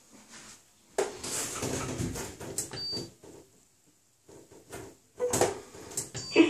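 Knocks, rubbing and rattles from handling and moving about inside a steam shower cabin, with a short electronic beep about three seconds in and a sharper knock shortly before the end.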